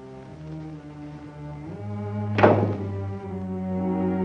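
Orchestral film score with sustained strings swelling louder. About halfway through comes a single heavy thud: a door slamming shut.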